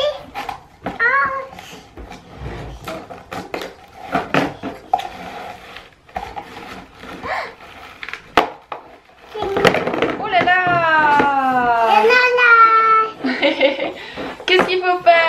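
Hard plastic pieces of a stacking toy clicking and knocking on a tabletop as they are pulled apart and set down, in short separate knocks. About ten seconds in, a high voice gives a long exclamation that falls in pitch, followed by a few more vocal sounds.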